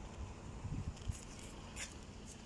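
Faint outdoor street ambience: an uneven low rumble of wind on the microphone, with a few brief high-pitched ticks about a second in and again near the end.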